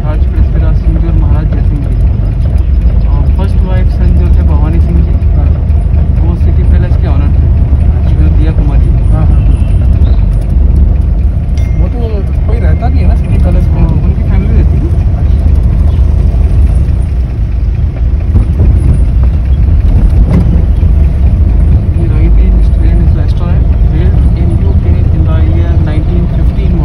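Steady low rumble of a vintage car driving, heard from inside the cabin, with faint voices in the background.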